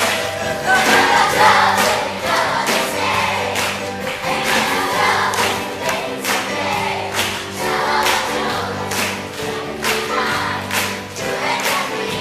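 A children's choir singing a song from the musical over loud accompaniment with a steady beat, about two beats a second.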